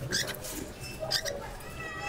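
Cockatiels calling: a few short, high chirps, then a brief whistled call near the end.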